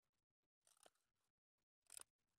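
Near silence, with two faint short scuffs, one under a second in and one at the very end.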